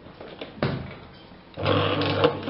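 Automatic tape-wrapping machine: a sharp click about half a second in, then about one and a half seconds in the machine starts its wrapping cycle, its motor running with a steady low hum as the taping head spins.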